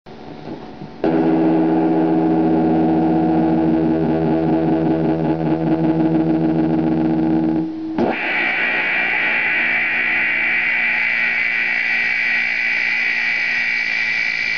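Electric guitar with a built-in ring modulator, run through a self-fed ring modulator and mixer, giving a harsh distorted drone. About a second in a loud sustained sound of many steady pitches starts, then near the end of the first half it cuts out and a high, steady piercing tone over noise takes over.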